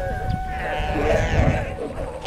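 Galapagos sea lions calling: wavering, bleat-like calls, several overlapping in the second half, over a low rumble.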